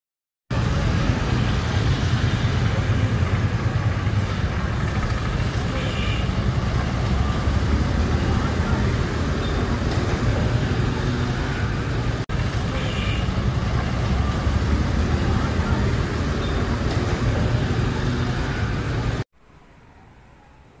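Steady, loud rumble and hiss of outdoor road traffic. It breaks off for an instant about twelve seconds in and stops suddenly just before the end.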